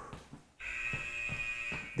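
Workout interval timer on a phone sounding a steady electronic buzzer tone, starting about half a second in and held to the end. It marks the end of a work interval.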